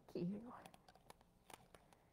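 A woman's voice finishing a soft "thank you", then quiet room tone with a few faint clicks.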